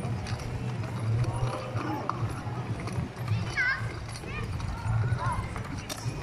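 Ride-on walking zebra toy moving along, with a rhythmic clopping roughly once a second, and voices behind it.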